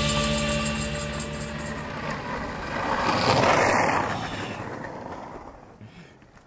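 The soundtrack's last chord ringing out and fading. About three to four seconds in, skateboard wheels rolling on asphalt swell and fade away.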